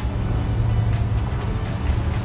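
Steady low rumble of a city bus's engine and running gear heard inside the passenger cabin, with background music over it.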